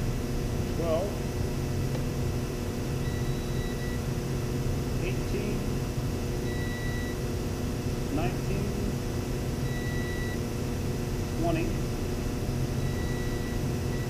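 Multimeter continuity beeper giving short high beeps, about half a second each, every few seconds (two in quick succession once), as the test leads touch the wired control terminals of a variable-frequency drive: each beep confirms a good connection. A steady low hum runs underneath.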